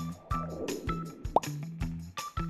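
Upbeat background music with a steady beat. A short swishing noise comes about half a second in, then a quick rising cartoon pop sound effect just under a second and a half in as the quiz changes question.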